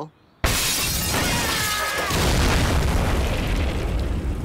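Cartoon sound effect of a building being destroyed: a sudden loud crash about half a second in, then a continuing din of breaking and falling debris.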